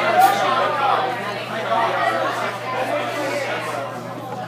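Indistinct chatter of several people talking, with a faint steady hum underneath.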